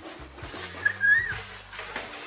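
Paper rustling as large poster sheets are handled, with a brief high whistle-like squeak about a second in.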